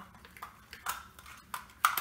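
Hard plastic clicks and taps as a toy bullet train's plastic cars are snapped onto a plastic track, with a few separate clicks and the loudest snap near the end.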